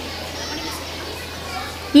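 Background chatter of children's voices in a hall, with a low steady hum beneath it.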